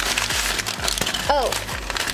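Brown paper packaging crinkling and rustling as it is handled.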